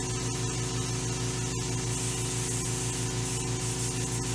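Steady hiss of air blowing from a nozzle over a circuit board, with a low hum underneath, clearing debris off the board.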